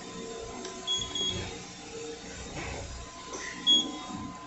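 Short high electronic beeps: a quick double beep about a second in and a single beep near the end, over steady faint background tones.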